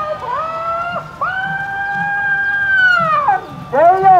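Roosters crowing. Shorter crows overlap early on, then one long crow starts about a second in, holds steady for about two seconds and droops at the end, and another short crow rises and falls near the end.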